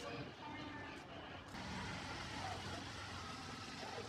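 Urban outdoor background noise: a steady hum of road traffic with faint voices. About one and a half seconds in, the background changes abruptly to a denser, steadier hiss.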